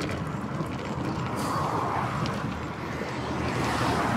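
Steady wind and road rumble on a handlebar-mounted camera while a road bicycle rides along a highway, with motor traffic going by; a passing vehicle swells up around the middle.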